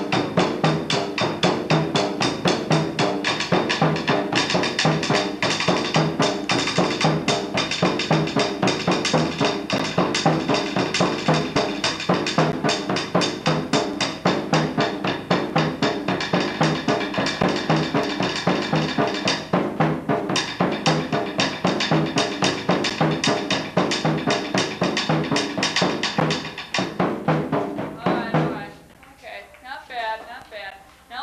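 High-school marching drumline, with marching bass drums and tenor drums, playing together in a steady, driving rhythm. The drumming stops about two seconds before the end.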